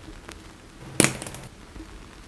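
A passion fruit chopped in half with a knife on a wooden cutting board: one sharp chop about a second in, over faint background hiss.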